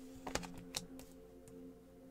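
Tarot cards being shuffled by hand: a few light, scattered clicks and slaps of card against card. Faint background music with steady held tones runs underneath.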